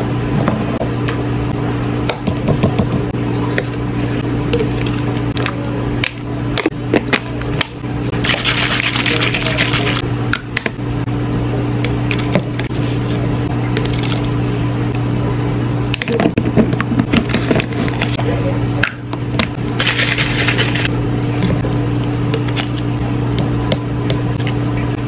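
A steady low electrical hum from a running appliance, with three short hissing sounds and a few light clicks over it.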